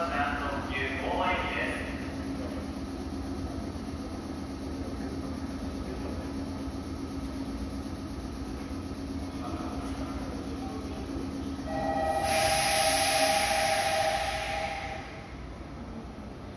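A Meitetsu 6500-series electric train stands at an underground platform, its equipment giving a steady hum. About twelve seconds in, a loud hiss comes in with a steady two-note tone for about three seconds, then fades. A voice is heard briefly at the start.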